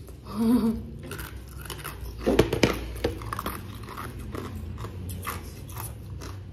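Crisp, crunchy chewing of raw green mango close to the microphone. A loud crunching bite comes about two and a half seconds in, followed by steady smaller crunches as it is chewed.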